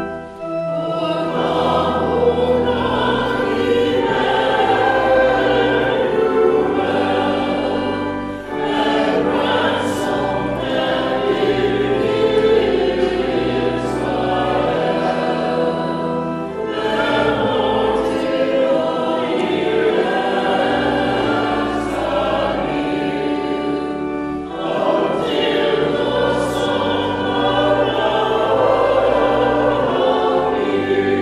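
A small mixed choir of men's and women's voices singing a hymn, with organ accompaniment, in phrases of about eight seconds each.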